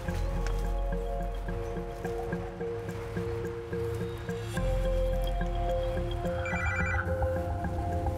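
Background drama score: held synthesizer chords over a low, pulsing bass, shifting to a new chord about halfway through, with a brief high electronic tone a little before the end.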